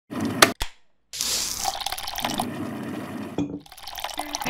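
Two sharp clicks as a stainless steel electric kettle is handled on its base. After a short gap comes about two and a half seconds of water pouring, which ends in a knock.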